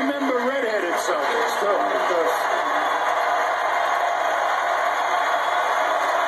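Steady arena crowd noise from a basketball broadcast, heard through a TV speaker, with a man's voice over it fading out in the first two seconds.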